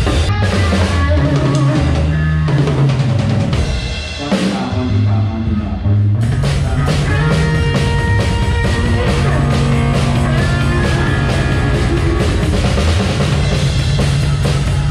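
Rock band playing a sound-check run-through, a drum kit with bass drum and snare driving the beat under sustained low pitched notes. The sound thins out about four seconds in and the full band comes back in about two seconds later.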